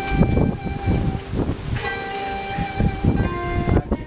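Instrumental background music led by a ney flute holding long, steady notes, changing note about two seconds in, over an irregular low rumble.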